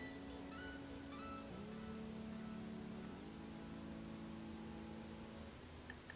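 Faint background music: sustained chords that change about one and a half seconds in and again about three seconds in.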